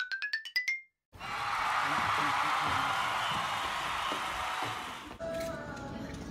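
A quick rising run of chime-like notes, a comic time-skip sound effect, climbs in pitch and stops about a second in. After a moment of silence a steady hiss follows for about four seconds, and faint background music comes in near the end.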